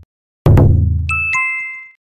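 Title-card sound effects: a sudden heavy bass impact hit about half a second in, then two bright bell-like dings in quick succession, the second a step lower, ringing on to the end.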